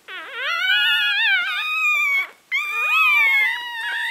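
Newborn West Highland White Terrier puppies, a few hours old, crying: two long, high, wavering squeals with a short break about two seconds in.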